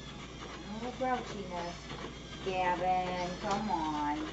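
A person's voice talking indistinctly, loudest in the second half.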